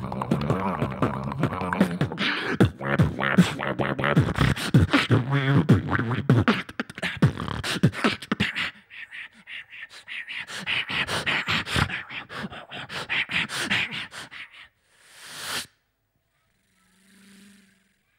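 Live beatboxing into a handheld microphone over a stage PA: a dense beat of vocal kick and snare sounds over a hummed bass line. About nine seconds in the bass drops out and the beat carries on in higher, sharper sounds, ending around fifteen seconds with a short rising rush of breath-like noise, after which it goes nearly silent.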